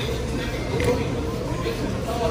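Indistinct voices over background music, with no clear tool or handling sounds.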